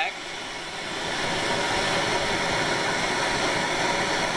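MAP-Pro gas torch burning with a steady hiss, its flame held on an asphalt roofing shingle.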